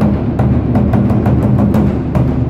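Chinese lion-dance war-drum ensemble: several large barrel drums and a big frame drum beaten with sticks in a fast, dense, continuous rhythm, with sharp clicking strikes among the booming drumbeats.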